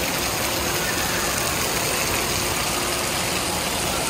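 Steady, even rush of water spraying and pouring onto a wet splash-pad floor in a large indoor water park hall.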